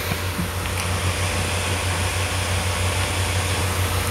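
Steady low hum with an even hiss throughout, like a running fan or air conditioner.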